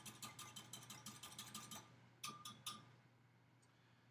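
Faint, fast clicking of a utensil beating liquid ingredients in a mixing bowl. It stops a little under two seconds in and is followed by three separate clicks.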